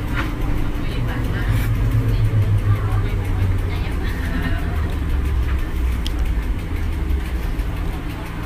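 Cabin sound of a NAW trolleybus on the move: a steady low rumble from the running gear and tyres on the road.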